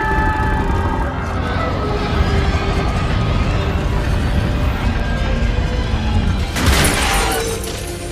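Dramatic film score with held tones over a heavy low rumble, and a loud crash of something smashing about seven seconds in.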